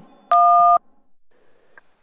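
A single telephone keypad tone, two steady pitches sounding together for about half a second: a key pressed on the phone in answer to an automated prepaid-call prompt. After it comes faint line noise.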